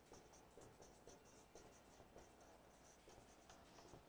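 Faint marker-pen strokes on a whiteboard as a line of text is written: a series of short, irregular strokes.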